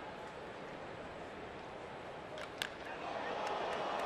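Ballpark crowd murmur, with a single sharp crack of a bat hitting a pitch about two and a half seconds in; the crowd noise then swells.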